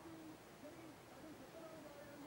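Near silence, with a faint, wavering low tone under a light hiss.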